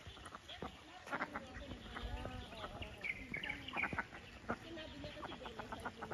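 Ducks calling in a series of short notes, with small birds chirping.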